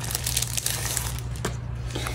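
Clear plastic sleeve crinkling and crackling irregularly as sticker sheets are handled and slid out of it.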